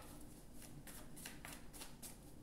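A deck of tarot cards being shuffled by hand: a faint series of short papery card flicks, about four a second.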